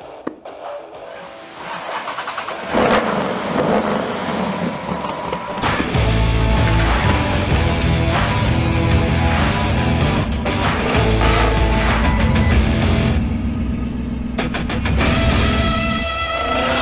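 A car engine, that of a classic Ford Mustang coupe, starting and running under loud music. A click comes just after the start, and a heavy low sound joins about six seconds in.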